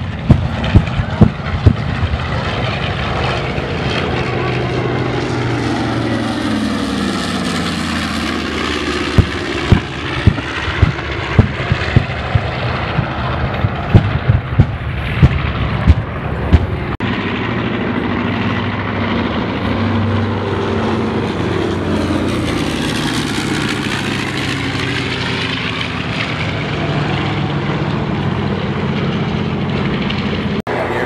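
Propeller airplanes flying low past, their engine note falling in pitch as they go by, while pyrotechnic charges go off as a string of sharp booms near the start and a rapid run of about a dozen booms from about 9 to 16 seconds in. Later a second pass rises and then falls in pitch.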